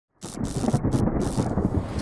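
Thunder sound effect: a deep, continuous rumble that comes in a moment after silence and holds steady.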